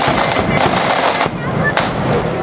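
Marching band snare drums beating rapid strokes and rolls with a bass drum, the drumming thinning out in the last half second with one last loud hit.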